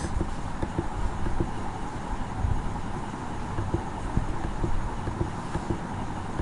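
Steady background hiss and faint hum with irregular soft knocks and clicks scattered throughout.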